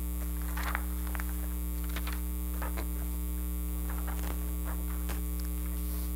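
Steady electrical mains hum, a low buzz that runs without change, with a few faint short sounds scattered through it.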